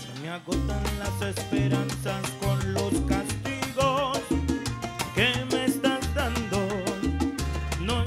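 Live salsa band playing a song: a steady bass and percussion rhythm with a wavering melody line over it.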